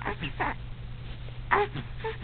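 A baby's short breathy vocal sounds, a few quick ones near the start and another about a second and a half in ending in a brief pitched coo.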